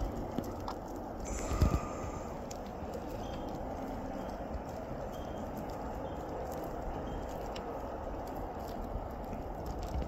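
Snowplow trucks plowing, a steady low noise of engines and blades on the road. A few faint clicks and one louder knock about a second and a half in come from close by.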